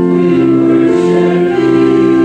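A congregation singing a hymn together, in long held notes that change about every half second to a second.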